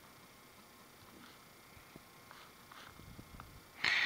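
Faint, sparse soft taps of a finger typing on a Samsung Galaxy Note's touchscreen keyboard, over quiet room tone.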